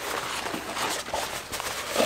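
Rustling and scuffing of a fabric haversack being folded and rolled up by hand, an uneven run of soft fabric handling noises.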